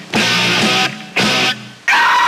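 Rock song with distorted electric guitar in a stop-start passage: two short loud chord blasts with sudden gaps between them, then the full band kicks back in near the end. Recorded off the radio onto cassette tape.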